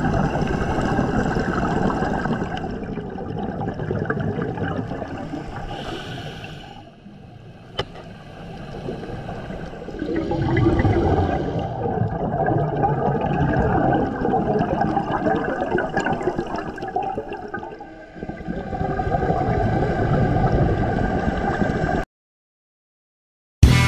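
Scuba breathing underwater through a regulator: long stretches of exhaled bubbles gurgling and rumbling, swelling and fading with each breath, with a short high hiss of an inhale about six seconds in.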